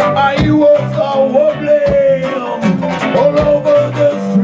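Live ska band playing: electric guitar and drums with regular strikes, and a long held, wavering note over the top through the first half.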